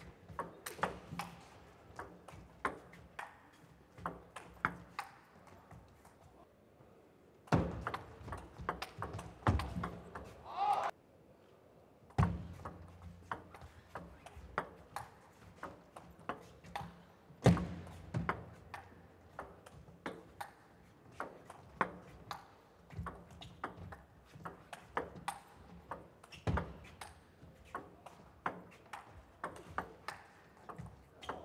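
Table tennis rallies: a celluloid ball being struck back and forth by rubber-faced rackets and bouncing on the table, a quick, regular run of sharp clicks with a few louder hits. There is a brief silent gap about a third of the way through, between rallies.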